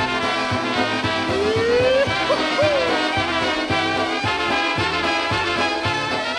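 A polka band playing an instrumental passage with a steady two-beat bass. Partway through, about a second and a half in, there is a short rising slide in the melody.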